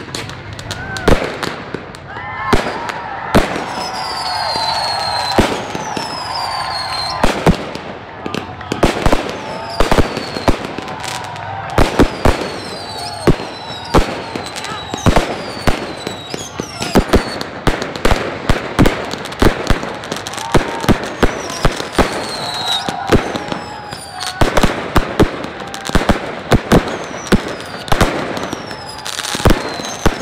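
Fireworks display: a rapid, irregular string of sharp bangs from bursting shells and firecrackers, with high whistles that fall in pitch.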